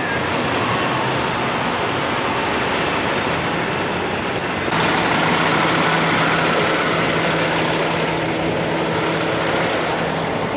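Steady noise of idling diesel semi-trucks at a truck-stop fuel island. A steady low engine hum joins about halfway through.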